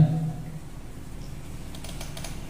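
A man's chanted recitation holds briefly and fades out in the first half-second. A quiet pause follows with a few faint, light clicks.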